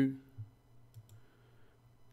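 A couple of faint clicks, about half a second and a second in, from keys being selected on an on-screen calculator.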